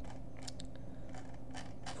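Several light clicks from a computer mouse as the page is scrolled and the mouse is worked, over a steady low hum.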